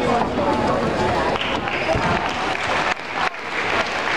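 Spectators clapping, starting about a second and a half in as the pommel horse routine ends, over voices in the crowd.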